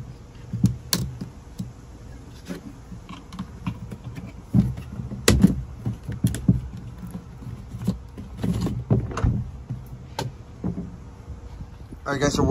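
Plastic clicking, knocking and rattling as a factory AC vent is twisted and worked loose from a Jeep Wrangler JL's plastic center-console bezel, with irregular sharp clicks throughout.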